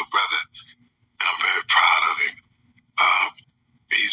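A person's voice in three short, breathy bursts with silent pauses between.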